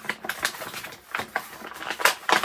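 Plastic bags crinkling and rustling as they are handled, with irregular crackles and a few sharper snaps.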